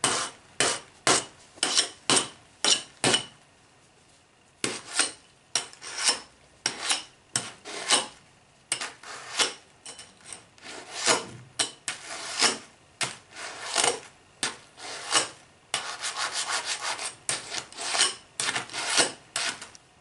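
Knife blade repeatedly slashed and drawn across a butted 4-in-1 metal chainmail bracer in a cut test, each stroke a short, sharp rasp of steel over the rings, two to three a second. The strokes pause briefly a few seconds in and come quicker near the end.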